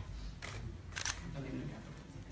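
Camera shutters clicking a few times, sharp short clicks about half a second apart, over a low murmur of voices in the room.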